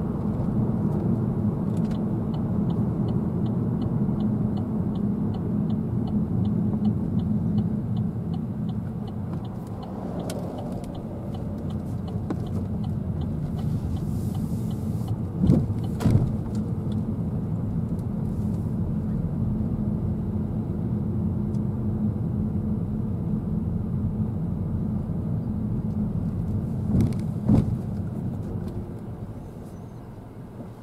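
Road and engine noise inside a moving car's cabin, a steady low rumble. A turn indicator ticks steadily, a few ticks a second, for about ten seconds near the start. The car jolts over speed humps with short thumps about halfway through and again near the end.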